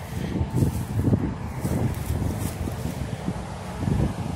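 Wind buffeting the phone's microphone: an uneven, gusty low rumble.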